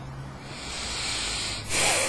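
A soft rubbing hiss that builds up about halfway through and is loudest for a moment near the end.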